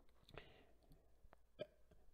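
Near silence with a few faint mouth clicks from a man pausing between spoken sentences.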